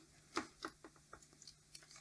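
Faint, scattered small clicks and taps of a plastic DVD loader mechanism and its wire connector being handled with a probe and fingers.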